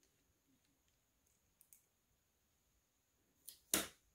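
Faint ticks from a small screwdriver working a tiny screw in a plastic scooter-throttle housing. Near the end come two sharper clicks, the second the loudest.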